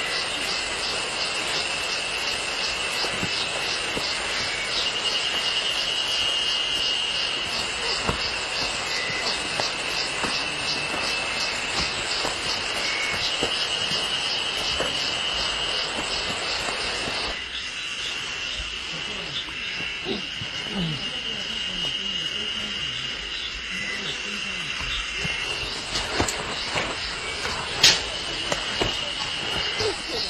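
Insects chirring in the forest: a steady high buzz with fast, even pulsing above it. A rushing noise lies under it and drops away a little past halfway, and there is a sharp click near the end.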